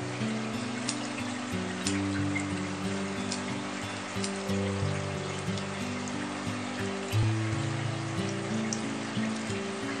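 Soft background music with a slow, steady melody, over the trickling of the terrarium's small water flow, with a few faint ticks.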